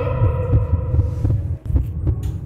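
Low, throbbing heartbeat-like pulses of a horror soundtrack, dropping out briefly near the end.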